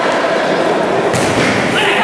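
A futsal ball struck with a single thump about a second in, over the steady noise of voices in the hall.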